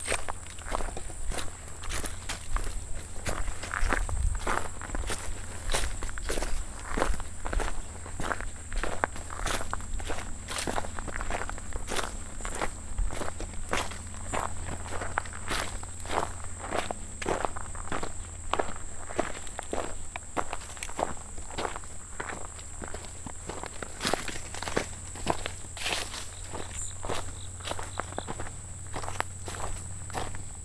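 Footsteps of a hiker walking steadily along a dirt forest trail strewn with dry leaves, about two steps a second. A steady thin high-pitched tone runs underneath.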